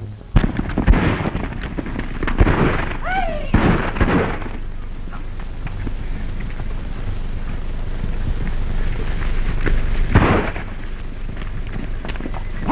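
Several gunshots in the first few seconds and another near the end, with a short wavering cry among the first shots, over the steady hiss of an old film soundtrack. The shots are cattlemen raiding a sheep flock.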